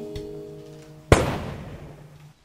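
Held musical notes cut off by a single loud, sharp bang about a second in, which dies away over about a second.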